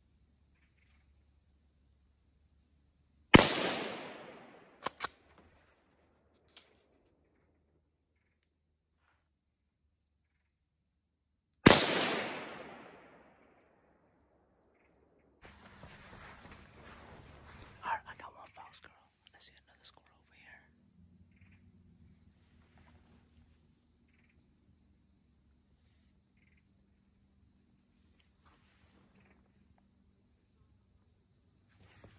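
Two shots from a .17-caliber rifle about eight seconds apart, each a sharp crack followed by an echo fading over about a second and a half, with two quick clicks just after the first shot. Rustling and handling noise follow a few seconds after the second shot.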